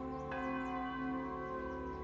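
A bell struck once a moment in and ringing on, over the held chords of soft theme music.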